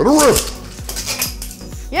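Beyblade Burst spinning tops ripped from their launchers, racing down plastic Hot Wheels track and clashing, with a run of sharp metallic clinks and clatter from about half a second in.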